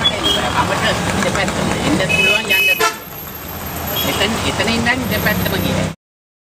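Busy city-street traffic with several short horn toots, one longer than the rest about two seconds in, over motor noise and people talking; the sound cuts off abruptly just before the end.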